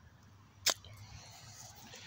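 A plastic toy golf club's head striking a golf ball: one sharp click a little under a second in.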